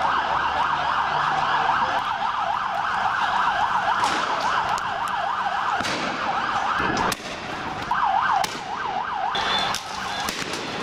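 Police vehicle siren sounding in a fast yelp that cuts off about seven seconds in, then returns briefly with a slower warble. A few sharp cracks sound over it.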